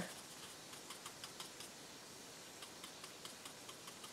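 Faint, irregular light ticks of a flat paintbrush patting and working acrylic paint on a painted wooden surface, in an otherwise quiet room.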